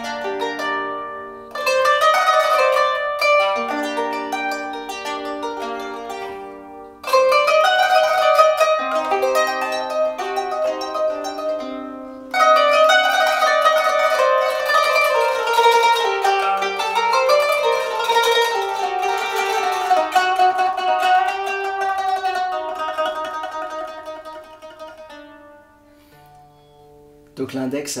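Qanun (Arabic plucked zither) played with plectra held in rings on the index fingers, the other fingers adding accompanying notes, in arpeggios. Three phrases of ringing plucked notes, each starting suddenly; the last dies away near the end.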